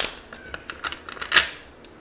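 Tarot cards being shuffled by hand: a quick run of crisp clicks and flicks, with one loud snap a little over a second in.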